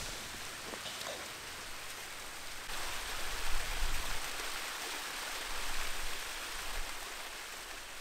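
Small waterfall cascading over rocks: a steady rush of falling water that grows louder and fuller about three seconds in.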